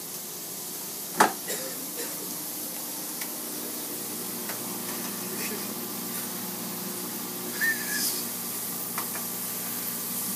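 Food frying in a pan on a gas stove: a steady sizzling hiss, with one sharp knock about a second in.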